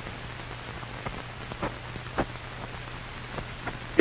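Hiss of an old film soundtrack, with a steady low hum and a few scattered crackles and pops.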